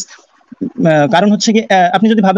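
A man's voice speaking after a short pause of about three quarters of a second.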